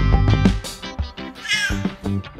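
A house cat meows once, briefly, about one and a half seconds in, over background music.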